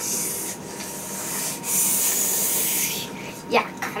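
Rubbing noise in two spells, a short one at the start and a longer one of about a second and a half past the middle.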